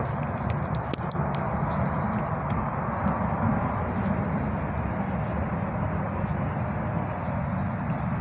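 Wood campfire burning down to embers, with a few sharp crackles, the clearest about a second in, over a steady rushing background noise.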